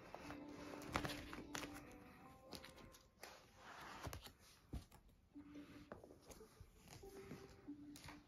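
Faint background music with a few sharp clicks and knocks and light rustling of plastic page sleeves as a ring binder full of photocards is handled and closed.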